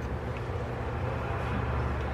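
Steady low hum with a faint even hiss.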